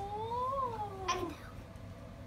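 A young child's drawn-out "ooh" of delight, rising in pitch and then falling over a little more than a second, with a short sharper cry just after.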